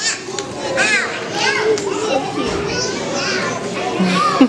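Many young children's voices chattering and calling out over one another, with high-pitched squeals about a second in and again shortly after.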